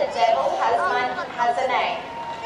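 Indistinct chatter of people talking.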